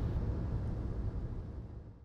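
Steady wind and rain noise heard from inside a vehicle, with raindrops on the windshield; it fades out near the end.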